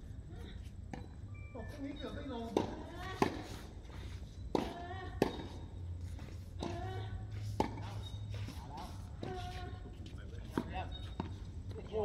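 Tennis balls struck by rackets and bouncing on an outdoor hard court during a doubles rally: sharp pops about a second or two apart, with players' voices between them.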